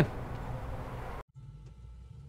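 Faint background hum that cuts off abruptly a little over a second in, followed by a low, steady rumble inside a car's cabin.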